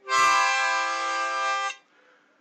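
Harmonica holding one long chord for nearly two seconds, ending an intro phrase, then stopping.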